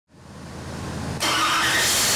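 Twin-supercharged 427 cubic inch LS V8, with two TorqStorm centrifugal superchargers, running on an engine dyno. It fades in, then jumps suddenly louder about a second in, with a strong hiss over the engine note.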